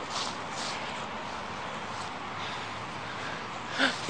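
Footsteps of a person running on grass over a steady rushing noise, with a short breathy sound near the end.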